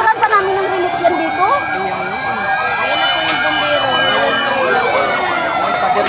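Fire truck sirens sounding together, one in a fast yelp about four times a second over slower wailing sweeps, building up from about a second and a half in.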